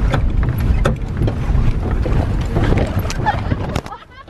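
Steady low rumble of a van driving over a rough, bumpy road, with sharp knocks and rattles as the vehicle jolts.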